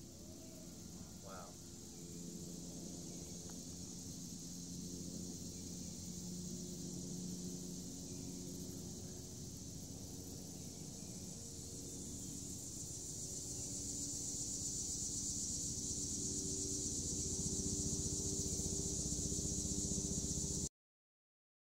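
Chorus of insects, a steady high-pitched buzz that swells louder in the second half, over a low background hum.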